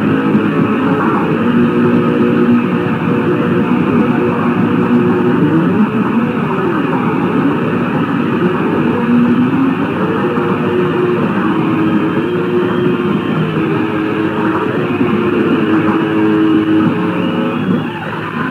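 Distorted electric guitar and bass from a live rock band, holding loud notes that slide slowly up and down in pitch. The sound is dull and thin at the top, as in a low-fidelity live recording.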